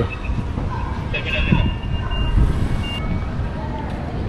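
Urban street ambience: a steady low rumble of traffic, with a few faint thin high tones in the middle. The background changes abruptly about three seconds in.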